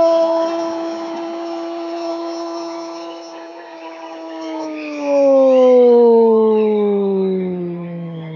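A sports commentator's drawn-out goal cry, one long 'goool' held at a steady pitch for about five seconds, then sliding down in pitch toward the end.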